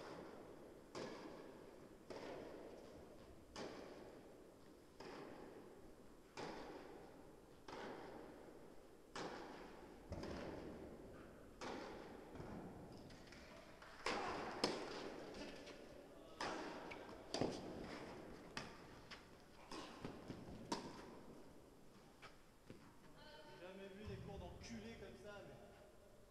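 Tennis rally on an indoor court: a sharp pock each time a racket strikes the ball or the ball bounces, about one every second to second and a half, each echoing in the hall.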